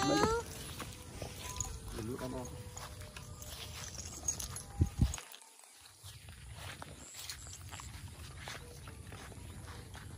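Footsteps of a person in flip-flops walking on a grassy rice-paddy bund, over a low steady rumble of wind on the microphone. A man's voice trails off at the start and a short word comes about two seconds in. The sound cuts out briefly about five seconds in.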